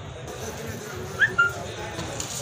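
Two short high-pitched animal cries in quick succession, the first rising and the second held level, over a background of voices.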